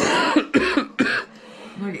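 A man coughing into his fist: three coughs in about a second, the first the loudest and longest.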